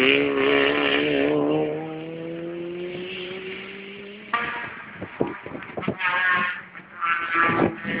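Rally car engine pulling away under acceleration, its pitch climbing steadily as it fades over about four seconds. From about halfway on, the next rally car's engine is heard approaching, revving in short bursts.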